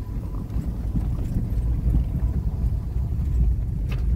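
Low, uneven rumble of a car driving slowly along a street: tyre, road and wind noise with a few faint knocks.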